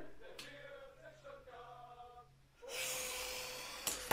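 A man's long breathy sigh close to the microphone, starting a little under three seconds in, after a stretch of near silence with a faint steady low hum. It is a sigh of disappointment at a shot that hit the crossbar.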